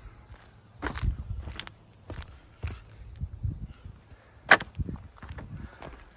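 Footsteps and scuffs on an asphalt-shingle roof: irregular sharp clicks and knocks over low, uneven rumble, with the loudest knock about four and a half seconds in.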